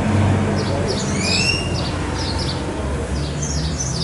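Birds chirping repeatedly, with a couple of rising whistled calls about a second in, over a steady low background rumble.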